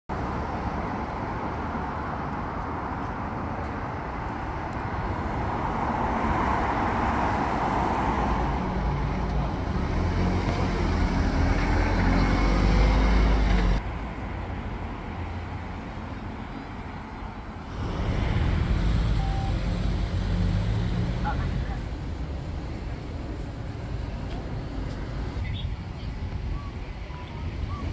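Road traffic passing, with car engines and tyre noise swelling as vehicles go by, loudest just before a sudden cut about halfway through, then another vehicle passing a few seconds later.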